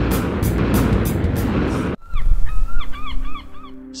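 Cartoon jet-flight sound effect: a loud, steady engine roar mixed with music that has a fast beat. It cuts off abruptly about halfway through. After it comes a quick run of short, honk-like tones, several a second.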